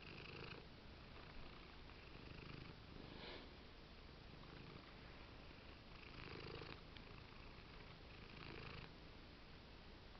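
Domestic cat purring close to the microphone, a faint, steady low rumble.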